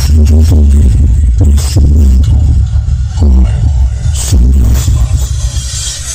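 Electronic music played very loud through a large outdoor sound-system stack of subwoofers, with deep bass dominating and pitched notes that now and then slide downward.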